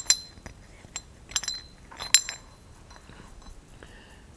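Metal parts of a brass check valve clinking against each other as they are handled and pulled apart: a handful of short metallic clinks, each ringing briefly, in the first two and a half seconds.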